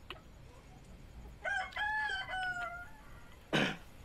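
A rooster crowing once: a single call of about a second and a half, broken into a few joined parts and dipping slightly in pitch at the end. A brief, louder rush of noise follows near the end.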